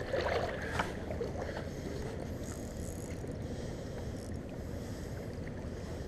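Steady low rumble of wind and river water at the microphone, slightly louder in the first second, with a few faint ticks.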